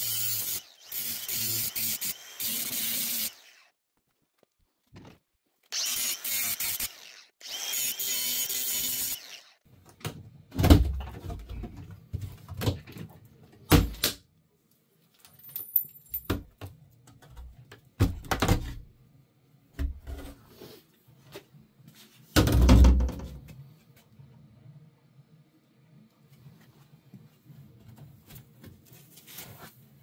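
A Ridgid angle grinder cutting through the steel edge banding of a plywood shipping crate, in three loud bursts over the first nine seconds. The rest is scattered knocks and thumps as the crate is opened, with one heavy thump a little over two-thirds of the way through.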